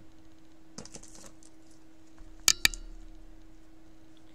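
A few faint scratches, then two sharp clicks in quick succession about two and a half seconds in, over a steady faint hum.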